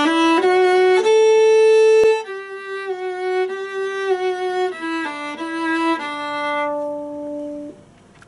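Viola playing a short, slow slurred melody: the first phrase ends on a held note about two seconds in. A softer second phrase follows and ends on a long held note that stops shortly before the end.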